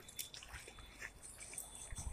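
Quiet outdoor ambience with a few faint soft ticks.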